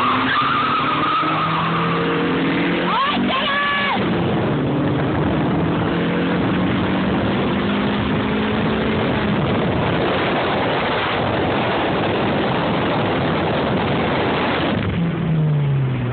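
A car launching hard in a drag run, heard from inside the cabin, with tires squealing for the first couple of seconds. The engine then climbs in pitch, with a break a few seconds in like a gear change, and climbs again. Near the end the pitch falls as the car slows.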